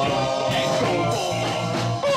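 Live rock band playing, with a steady repeating bass line under the guitar and other instruments.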